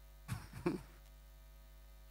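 Two short throat sounds from a man at a handheld microphone, a moment apart, within the first second, followed by quiet room tone.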